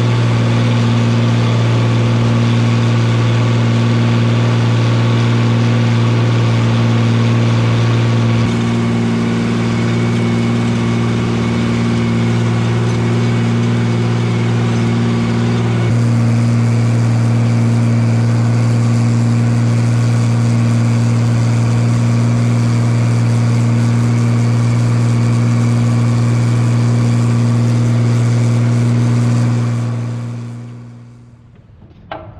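Oliver 2050 tractor engine running steadily under load while pulling a disc harrow through the field, a loud low hum that shifts slightly in tone twice along the way.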